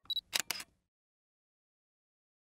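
Short sound effect on a logo card: a brief high beep, then two sharp clicks in quick succession.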